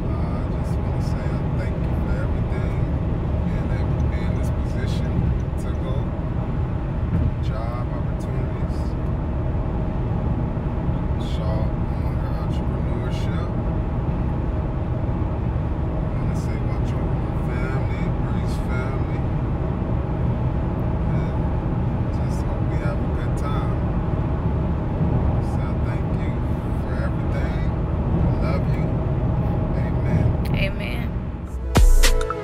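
Steady road and engine rumble inside a car's cabin cruising at highway speed, with faint, indistinct voices at times.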